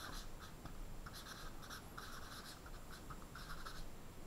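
Marker pen scratching across a whiteboard in a quick run of short strokes as a word is handwritten; faint.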